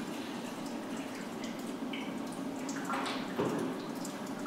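Water running and trickling steadily in a darkroom sink, with Photo-Flo being poured from a graduated cylinder into a film developing tank.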